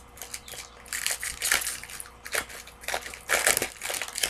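Trading-card pack wrapper and cards being handled: irregular crinkling and rustling in several bursts, loudest a little after three seconds in.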